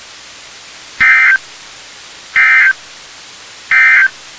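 Emergency Alert System digital data tones from NOAA Weather Radio: three short bursts of warbling two-tone data, each about a third of a second and about 1.4 s apart, over steady radio hiss. Coming straight after the spoken warning, the three bursts are the end-of-message (NNNN) code that closes the alert.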